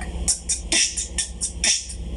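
A man imitating a rock drum beat with his mouth: short hissing cymbal-like 'ts' sounds about three a second, with low kick-like vocal thumps between them.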